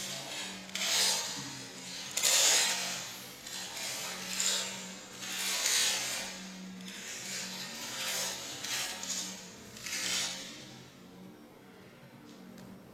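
Plastic 3x3 Rubik's cube layers being turned by hand through an OLL algorithm: quick clattering runs of turns, about seven of them, each a second or so apart. A faint steady low hum lies underneath.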